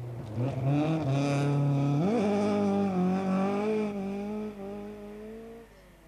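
Rally car engine revving hard, its pitch climbing at about half a second and again sharply at about 2 s, then holding high before falling away near the end.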